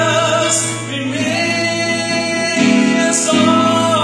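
Live gospel song: a man singing in Portuguese into a microphone, amplified through loudspeakers, over a held low backing note, with other voices joining in.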